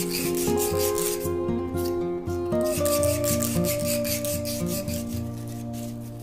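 A brass pen tube is rubbed with sandpaper in rapid back-and-forth strokes, scuffing its shiny surface matte so the glue will grip. The strokes ease off in the second half, and background music plays throughout.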